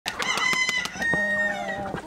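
Free-range chickens: a rooster crowing in long drawn-out calls over most of two seconds, the later part lower and gliding, with quick short clucks from the flock throughout.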